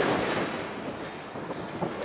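Crowd noise in a large, echoing hall: a murmuring reaction swells at the start and then slowly dies down. A single dull thud comes from the wrestling ring near the end.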